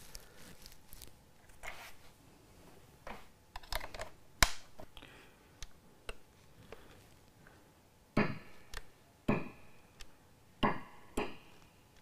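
Light clicks, taps and knocks of small metal guitar hardware and a screwdriver against an acrylic guitar body as pickups are fitted. A single sharp click stands out about four and a half seconds in, and a run of louder knocks with brief ringing comes in the last four seconds.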